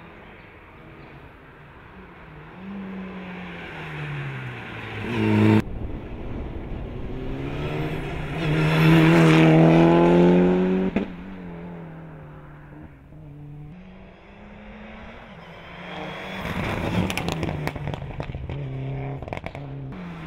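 Mitsubishi Lancer Evolution rally car's turbocharged four-cylinder engine at full throttle on a hill-climb run, heard over several cuts. The engine note rises and drops back with gear changes, and is loudest as the car passes close by in the middle. Near the end comes a run of sharp cracks.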